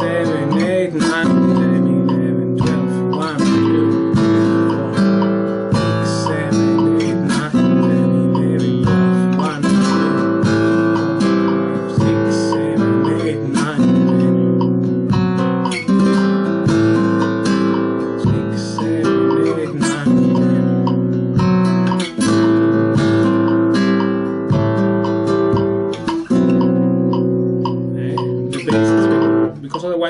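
Nylon-string flamenco guitar played with rasgueado strums: a steady run of chords in soleá por bulerías rhythm, broken by sharp percussive strokes across the strings.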